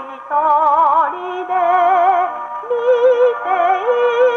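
A 78 rpm record playing on an acoustic wind-up gramophone: a female voice sings a children's song with strong vibrato over a small orchestra. The playback sounds thin and horn-coloured, with a short break between phrases just after the start.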